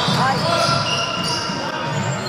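Basketball being dribbled on a hardwood gym floor, with sneakers squeaking in short high chirps as players run and cut, and voices from the court and sidelines.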